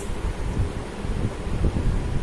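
Low, irregular rumble of air buffeting the microphone, with a faint hiss above it and no speech.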